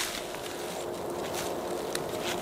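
Quiet outdoor background: a faint steady hum, like a distant engine, with a few light ticks and rustles.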